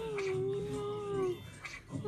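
A dog howling along to a tune, one long held note with a slight wobble that breaks off about two-thirds of the way through.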